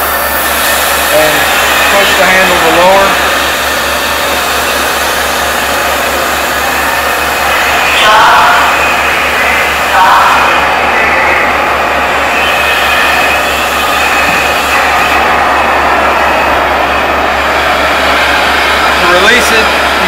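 Vacuum tube lifter running: a steady loud rush of air drawn through the suction tube by its vacuum blower, over a steady low motor hum, with brief louder surges about 8 and 10 seconds in as the load is handled.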